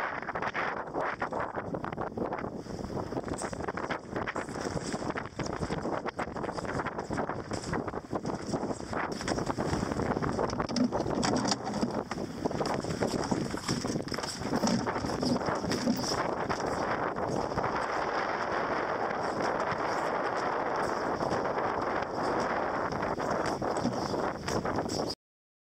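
Wind buffeting the microphone over the rush of water along a sailboat's hull while under sail in choppy water; the noise is steady and gusty, thickening in the second half.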